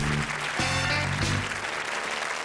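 A studio audience applauding over the show's closing music, which moves in short chords.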